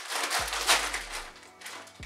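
Plastic crisp packet crinkling as it is handled and pulled open, loudest about two-thirds of a second in.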